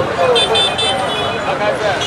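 Street background of traffic and distant voices during a pause in the speech, with a run of short, high-pitched tones from about a third of a second in until near the end.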